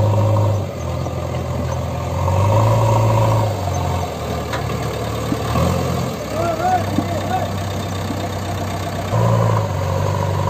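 JCB 3DX backhoe loader's four-cylinder diesel engine running, picking up revs about two seconds in and again near the end.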